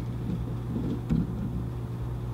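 Room tone: a steady low hum with an uneven low rumble under it, and a faint click about a second in.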